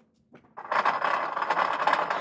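Rapid mechanical chattering from the prop lie-detector machine, starting about half a second in and running on steadily to the end.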